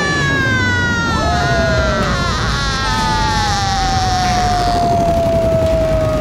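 A girl's long, drawn-out scream of horror, held for several seconds and slowly falling in pitch.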